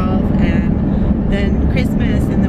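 Steady low rumble of a car's road and engine noise inside the cabin while driving, with a woman's voice talking over it.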